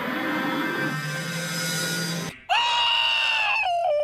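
Cartoon soundtrack music, then after a sudden cut about two and a half seconds in, a loud, high-pitched scream held for about two seconds, sliding slightly down in pitch near the end.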